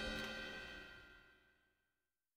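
The last chord of a blues band ringing out: the cymbal wash and held notes die away and fade to silence about a second in.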